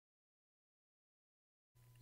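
Near silence: a blank audio track before the narration starts.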